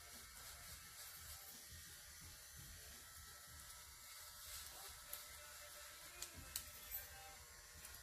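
Faint snips of barber's scissors cutting beard hair over a comb, a few soft clicks against a low steady hum.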